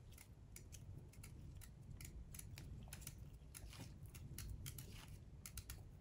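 Thin carving-knife tip cutting into a crisp raw green-skinned, red-fleshed radish: faint, irregular small crisp clicks and snicks, several a second, as the blade slices into the flesh.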